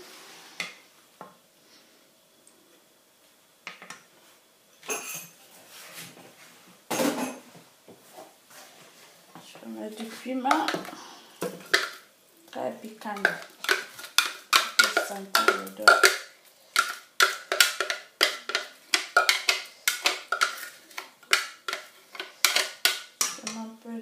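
A plastic spatula scraping and knocking against a plastic food-processor bowl and the rim of a saucepan while thick blended chili paste is emptied into the pan. The knocks come in a quick run of about three a second through the second half.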